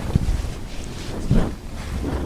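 Mercerised cotton saree being flung open and spread out, the cloth rustling and brushing against the microphone with low rumbling handling noise, with a swish near the start and another about a second and a half in.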